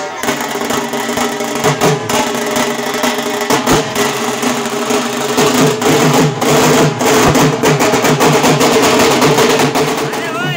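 An ensemble of large dhol barrel drums beaten with sticks, playing a fast, dense rhythm that grows louder about halfway through.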